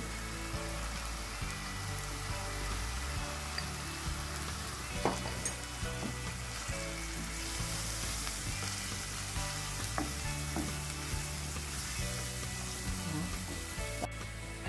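Onion and garlic paste with ground turmeric frying in oil in a nonstick pan, sizzling steadily as the spice masala cooks. A wooden spoon stirs it, with a few sharp knocks against the pan, about five and ten seconds in.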